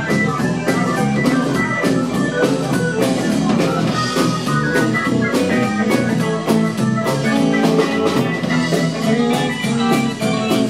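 Live blues band playing an instrumental stretch of a 12-bar blues in E: electric guitars, keyboard, bass and drum kit, with a steady drum beat.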